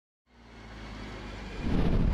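A swelling whoosh and rumble sound effect that rises out of silence just after the start and grows steadily louder to a full, deep rumble near the end.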